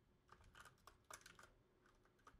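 Faint computer keyboard typing: a few scattered, quiet keystrokes over near silence.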